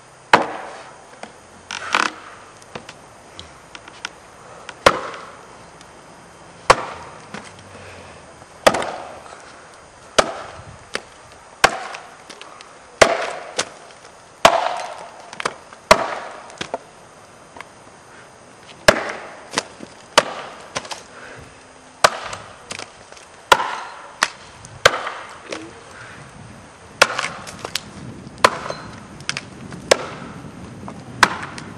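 Axe chopping into a standing pole: sharp strikes into the wood, about one every one to two seconds, in springboard chopping.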